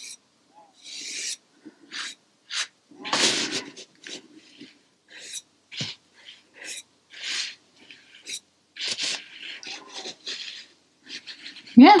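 A stiff synthetic hog-bristle round brush (size 16) dragging and dabbing acrylic paint on canvas paper: a string of short scratchy strokes with brief pauses between them.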